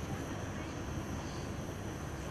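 Steady background noise of a hall during a pause: a continuous low hum and hiss, with no distinct event.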